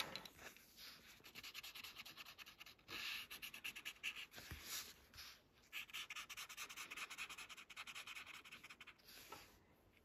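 Paper tortillon (blending stump) rubbing graphite into a paper tile in rapid short strokes, a faint scratchy rubbing that comes in several runs with brief pauses between them.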